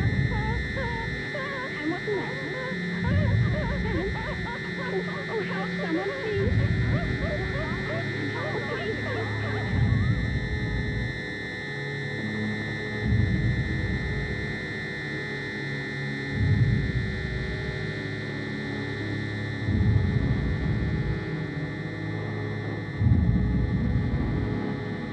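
Horror-film soundtrack under a telepathic attack: an eerie electronic score with a steady high drone and a deep pulse about every three seconds. Wavering, whimper-like cries sound over it through the first ten seconds.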